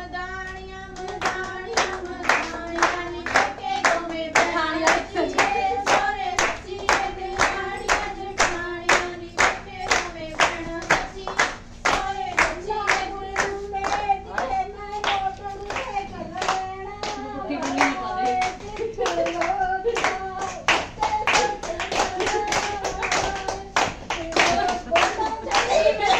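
A group of women clapping hands in a steady, even rhythm while singing a song together.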